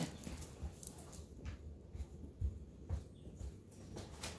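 Faint, scattered soft thumps and light clicks of things being moved and handled, over a low steady hum.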